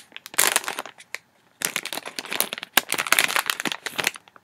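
A foil blind-bag packet of Lion Guard mystery figures being crinkled and torn open by hand. The crackling comes in two stretches: a short one at the start, a brief lull, then a longer one.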